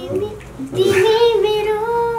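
A young girl singing a line unaccompanied, holding one long steady note from about a second in.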